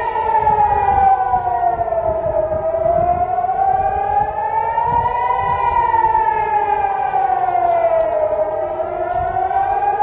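Civil-defence air-raid siren wailing, its pitch slowly rising and falling about once every five to six seconds: the warning siren for incoming rockets.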